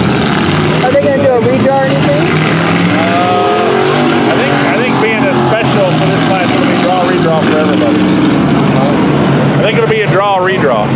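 Several hobby stock race car engines running as the cars circle the dirt oval, their pitch rising and falling as they rev and pass.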